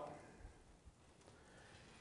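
Near silence: faint room tone, with the end of a spoken word fading out at the very start.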